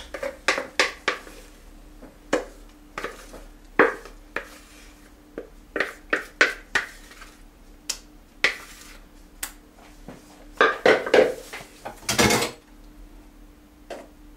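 A kitchen utensil clinking and scraping against a mixing bowl as thick cheesecake mixture is transferred into a mold. There are irregular knocks and taps throughout, with a longer, louder scrape near the end.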